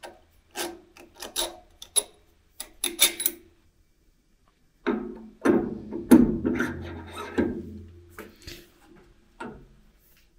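A run of light metallic clicks as thin spacer rings are dropped onto the steel spindle of a planer-moulder, then, about five seconds in, a longer scraping rub with a faint ring as the flooring cutter head is slid down onto the spindle. A few small knocks follow near the end.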